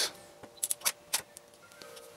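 A quick run of about five sharp clicks, the Pluto Trigger's water drop valve and the camera shutter firing for a water-drop shot.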